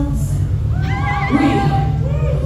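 A voice holding a high, wavering cry for about a second, starting near the middle, over a steady low rumble.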